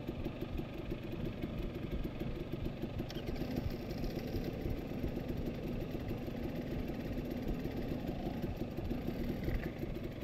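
Dirt bike engine idling steadily, heard close up from the bike.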